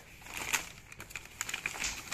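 Kraft packing paper and bubble wrap crinkling and rustling as hands unwrap a package, with scattered small crackles.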